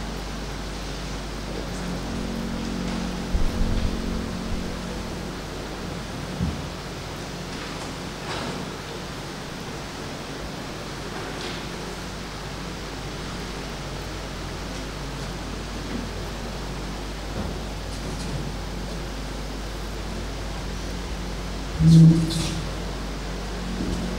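Steady hiss of room and microphone noise with a low hum underneath, and a few soft knocks in the first several seconds.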